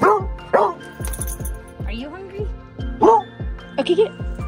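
A dog barking and yipping several times, short excited barks while it waits to be fed, over background music with a steady beat.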